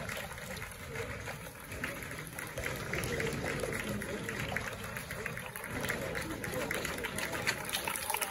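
Crowd of spectators murmuring and chattering, over a steady hiss of rain.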